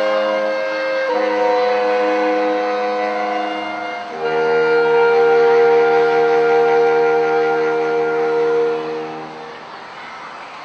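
Saxophone quartet playing slow sustained chords, moving to one long loud held final chord about four seconds in that is cut off together about half a second before the end.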